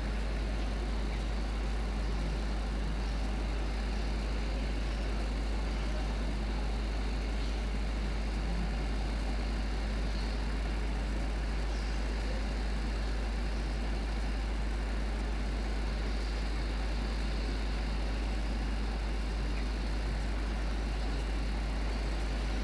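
A steady low hum under an even hiss, unchanging throughout, with no distinct events.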